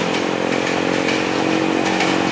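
Electric commuter trains running past at close range: a steady buzzing hum from the traction motors, with regular clicks of wheels over the rail joints and points.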